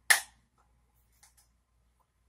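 Pull-tab lid of a can of sweetened condensed creamer cracking open with a sharp pop that fades quickly, followed by two light clicks about a second later.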